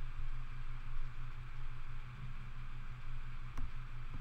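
Steady low hum with a faint hiss of room tone, and a faint click about three and a half seconds in.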